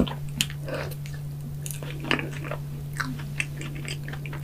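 Close-miked mouth sounds of biting into and chewing a soft cream-topped strawberry donut: irregular wet smacks and clicks over a steady low hum.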